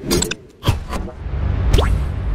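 Swoosh-and-hit sound effects for an animated logo: a sudden burst of noisy hits, a falling swoosh, then a rising swoosh over a loud, deep rumble.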